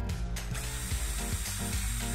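Cordless drill driving a screw into a white board, its motor running steadily.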